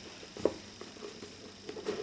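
Hands handling a boxed tarot deck as it is picked up: a light tap about half a second in, then a few soft knocks and rubs near the end.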